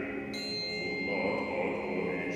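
Choir singing sustained chords, with a high bell struck about a third of a second in and left ringing over the voices.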